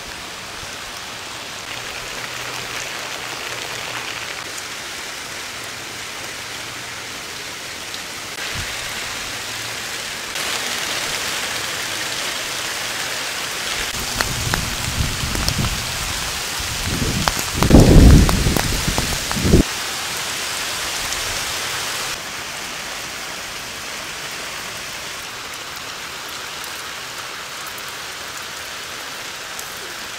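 Steady rain falling. A loud low rumble of thunder builds about halfway through and peaks a little after.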